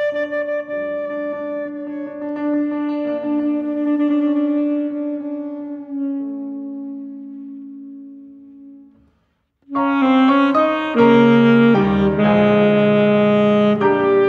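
Saxophone and piano playing a classical sonata: long held notes die away into a brief silence about nine seconds in, then the duo comes back in loudly with full piano chords under the saxophone.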